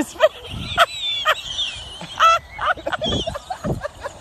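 A run of short, high-pitched squeals and yelps from people, some gliding up and down in pitch, with a few dull low thumps among them.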